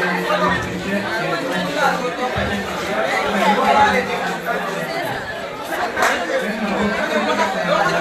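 Many voices talking at once, steady crowd chatter echoing in a large hall.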